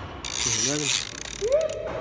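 A handheld plastic-and-metal gadget being worked by hand, giving a short mechanical whirr early on. Voices sound alongside, with a rising call near the end.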